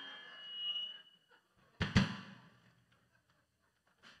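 A live rock band's closing accents: a high ringing tone swells and fades in the first second, then a last drum-kit and band hit about two seconds in rings out and dies away.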